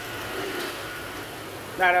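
Risotto rice sizzling in a hot pan on the stove, a steady hiss; a man's voice comes in near the end.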